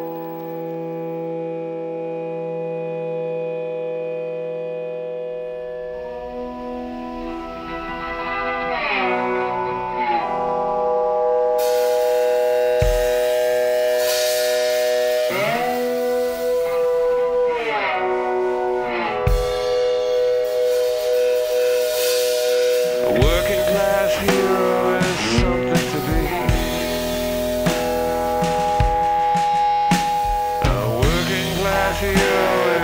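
Rock band playing a slow instrumental intro. It opens on a held chord, more instruments join about six seconds in, and the full band with drums comes in about twelve seconds in. An electric guitar played with a slide glides up and down between notes.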